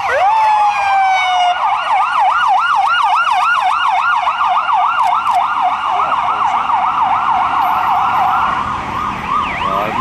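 Police escort sirens, several sounding at once in a fast warbling yelp. For the first second and a half one of them holds a steady tone that slides slightly downward.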